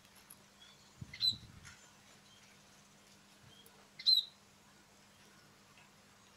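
Small munias (emprit) chirping: two short, sharp calls about a second and about four seconds in, with fainter chirps scattered between.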